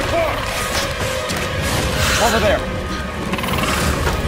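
Film sound effects of a demon creature: short rising-and-falling shrieks, one early and a cluster about two seconds in, then a fast rattling click near the end, over a music score.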